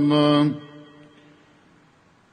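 A man's chanting voice holds a long note that stops about half a second in. It fades away, leaving near silence with a faint hiss.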